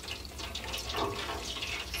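Battered Oreos deep-frying in hot oil in a fryer basket: a steady bubbling hiss with fine crackling.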